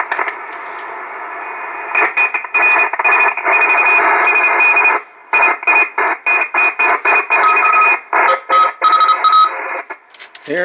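Kenwood TS-450S transceiver's receiver audio, static with a steady tone in it. It cuts out and crackles back in over and over as the coax plug in the antenna connector is wiggled, the sign of a bad connection at the antenna connector or a broken wire to it. It runs steadily for about two seconds, then comes in louder with frequent short dropouts that grow choppier in the second half.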